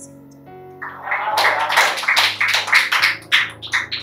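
Background music with soft held notes. About a second in, a loud run of quick, noisy strokes joins it for around two seconds, then the music settles back.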